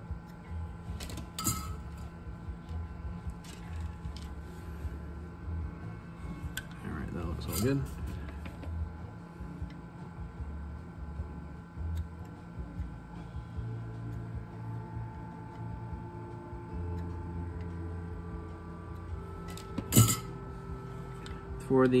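A few light metallic clicks and taps, three of them sharp and spread across the stretch, as a soldering iron and fingers work on the pots inside a metal guitar-pedal enclosure, over a faint steady hum.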